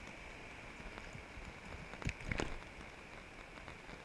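Faint, steady wash of surf at the water's edge, with two short taps a little after two seconds in.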